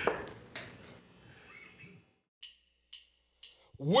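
Drumstick clicks counting the band in: three sharp, evenly spaced taps about half a second apart after fading talk and laughter. The band's guitar comes in at the very end.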